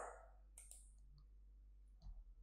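Near silence, with a few faint clicks of a computer mouse in the first half.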